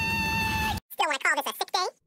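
Cartoon character voices: a held high-pitched yell that cuts off just before the first second, then a string of short, wavering, whiny cries.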